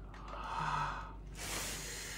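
Soft breathy sounds from a person: a breathy gasp in the first half, then a longer hissing exhale in the second half.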